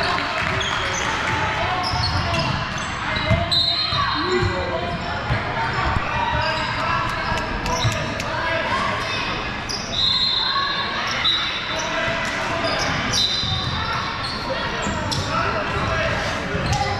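Basketball game in a large echoing gym: a basketball bouncing on the hardwood and sneakers squeaking in short, high squeals, over the voices of players and spectators.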